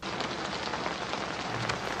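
Steady rain falling, heard on a TV drama's soundtrack.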